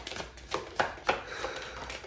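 Tarot cards being shuffled and handled, giving several short sharp snaps and clicks of card stock.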